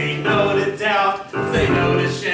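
A group of voices singing together in chorus with musical accompaniment, in sung phrases with short breaks between them.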